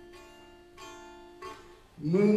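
Soft instrumental accompaniment with a plucked, string-like sound: a few single notes ring out and die away, a new one about a second in and a smaller one shortly after.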